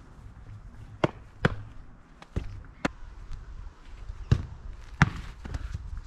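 A football being kicked and struck, about six sharp thuds at uneven intervals, over a steady low rumble.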